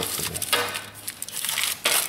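Aluminium foil crinkling and crackling as hands press it flat into a metal smoker pan and crimp its edges down.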